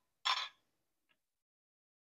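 One short scrape of a ladle against the container as sauce is ladled into the sour-cream mixture.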